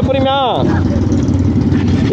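Motorcycle engine idling steadily. Over the first half-second a drawn-out vocal 'yeah' rides over it.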